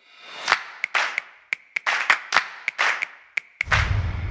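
Animated title-card transition sound effects: a quick run of about a dozen pops and short swooshes, then a deep boom near the end that slowly fades away.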